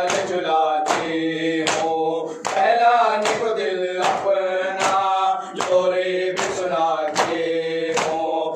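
Male voices chanting a nauha, a Shia lament, led by a reciter on a microphone and taken up by a group, with rhythmic unison chest-beating (matam) slaps about once every 0.8 seconds.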